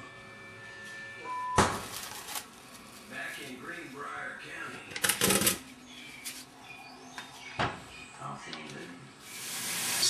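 Saucepan and lid handled on a kitchen counter and stovetop: a sharp knock about a second and a half in, a longer clatter about five seconds in, another knock near eight seconds, and a rising hiss near the end.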